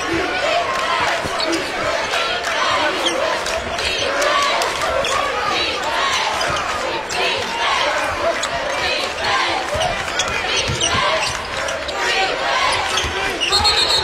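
Steady arena crowd noise with a basketball being dribbled on the hardwood court during live play, heard as short repeated thuds through the crowd sound.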